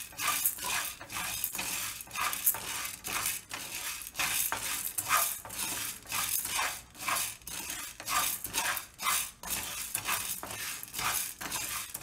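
Wooden spatula scraping across a nonstick frying pan as split lentils are stirred and roasted dry, the grains rattling against the pan. The strokes come irregularly, about one or two a second.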